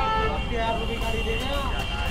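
Petrol-station forecourt ambience: indistinct voices over a steady low rumble of traffic and engines, with a steady high hum.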